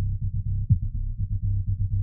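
Opening of an original electronic music piece: a fast, even, low bass pulse with nothing higher in pitch above it.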